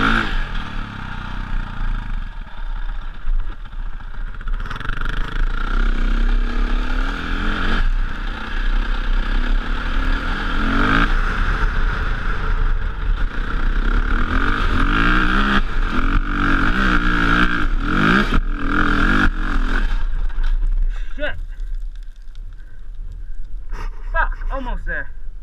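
Dirt bike engine revving hard on a steep sand hill climb, its revs rising in several surges. About twenty seconds in the engine note drops away as the bike loses momentum near the top of the slope.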